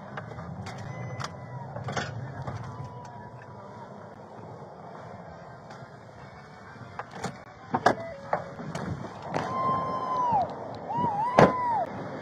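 Patrol car cabin with a low engine and road rumble, broken by sharp clicks and knocks as the deputy handles the controls and door and gets out of the car. In the last few seconds come two short held tones that bend in pitch, from a source that cannot be named.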